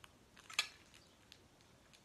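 A sharp clink of glass on glass about half a second in, with a smaller tick just before it and a few faint ticks later, as the lid of a pressed-glass ice bucket shifts on its rim while being handled; otherwise quiet room tone.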